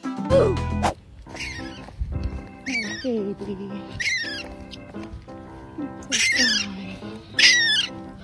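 Young raccoon crying in a series of about five high calls that each fall in pitch, one every second or two, over background music. A short loud low sound comes in the first second.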